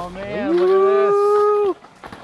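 A person's long, drawn-out vocal call, like a wordless greeting shout, that rises in pitch and then holds one note for about a second before breaking off.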